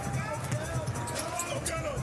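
Basketball game sound on a hardwood court: a ball being dribbled, with short squeaky chirps and a murmur of arena background noise throughout.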